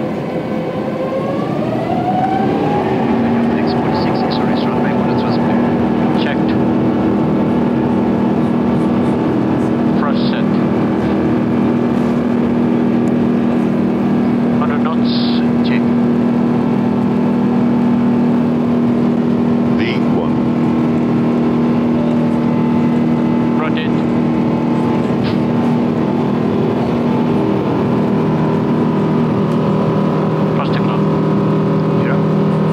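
Airbus A350-900's Rolls-Royce Trent XWB turbofans spooling up to takeoff thrust, heard from inside the aircraft. A rising whine climbs over the first two to three seconds, then settles into a steady loud engine noise with rumble through the takeoff roll.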